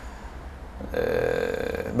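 A man's drawn-out hesitation sound: a pause, then a single vocalised filler held at a steady pitch for about a second in the middle of a sentence.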